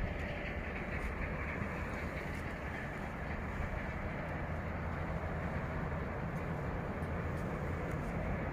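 Steady background rumble and hiss with no distinct events.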